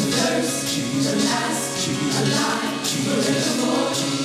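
Live gospel choir and worship singers singing together, with instrumental accompaniment.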